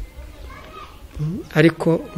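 A short pause with only faint background sound, then a man's voice starts speaking a little past halfway through.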